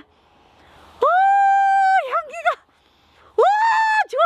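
A woman's long, high, drawn-out wordless exclamation of delight, held steady for about a second and trailing off in a wavering tail, then a second rising one near the end.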